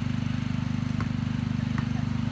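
A basketball bouncing twice on an asphalt driveway, about a second in and near the end, over a loud steady low mechanical drone with a fast even pulse.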